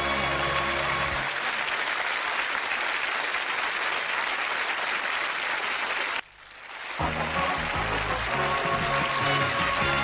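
Sitcom theme music and studio-audience applause; the music thins out about a second in, leaving mostly clapping. Both cut off about six seconds in, and after a brief dip the theme music starts again about a second later.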